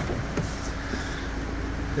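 Steady low hum with a faint click about half a second in.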